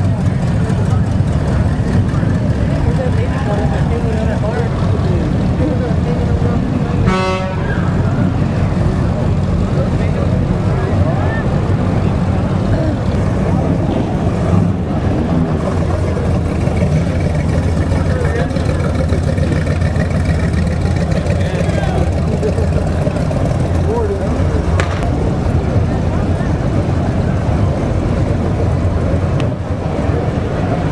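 Engines of classic cars running steadily and low-pitched as they drive slowly past. A short car horn toot sounds about seven seconds in.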